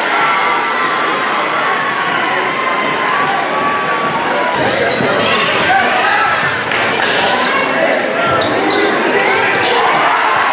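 Basketball dribbled on a hardwood gym floor, with sharp bounces in the second half, over the steady chatter and shouts of a crowd in a large, echoing gymnasium.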